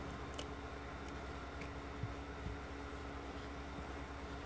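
Steady low electrical hum and hiss, with faint soft thumps and clicks from a baby raccoon scrambling about on a towel, two of the thumps about two seconds in.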